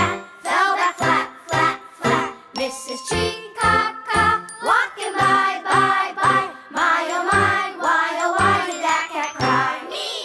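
Children's song: a voice singing lyrics over a bouncy, bright accompaniment, with a steady beat about twice a second.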